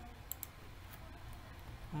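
A few faint computer clicks: mouse clicks and key presses, sharpest about a third of a second in, then fainter ticks, over a low steady hum.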